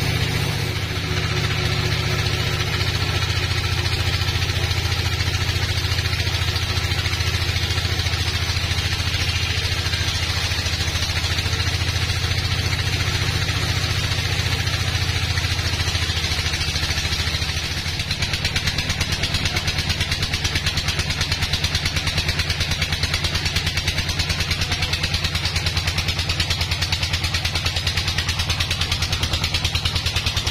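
Band sawmill driven by a Dong Feng engine, running steadily while the blade cuts through a large hardwood log. A little before the halfway point the sound dips briefly, then carries on with a fast, even pulsing beat.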